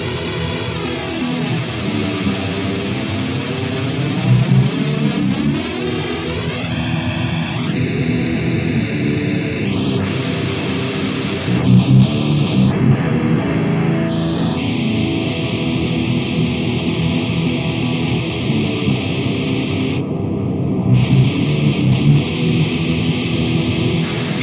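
Distorted electric guitar with drums, played through the Shibalba amp sim with two cabinet impulse responses blended. For the first several seconds the tone sweeps hollow and phasey as the sample alignment between the two IRs is shifted, and the tone changes abruptly a few more times later on.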